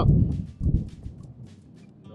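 Loose dry soil and gravel being scooped from a shallow dug hole with a plastic scoop, a run of small ticks and rattles with a soft knock about two thirds of a second in, while isolating a metal-detector target lying near the surface. A low rumble of handling or wind at the start.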